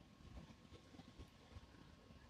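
Near silence: faint outdoor ambience with a thin steady tone and scattered faint low knocks.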